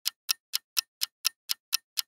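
Clock-ticking countdown sound effect: short, even ticks at about four a second.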